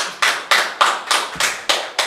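Hands clapping together in a steady rhythm, about four claps a second: applause in unison.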